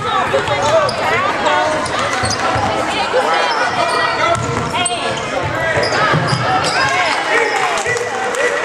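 A basketball being dribbled on a hardwood gym floor, with steady overlapping chatter and calls from spectators.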